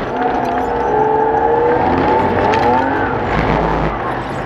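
Race car engine heard from inside the cabin, running under load with its pitch wavering and climbing a little, over a low rumble.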